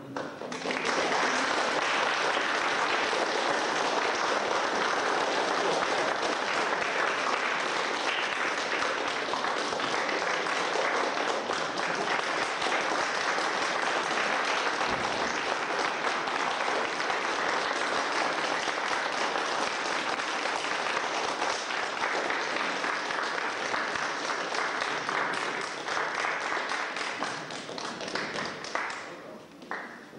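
Theatre audience applauding at the curtain call after the performance, a dense steady clapping that starts within the first second and dies away just before the end.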